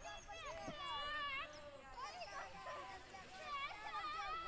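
Several high-pitched voices at once, some held in drawn-out calls with a wavering pitch.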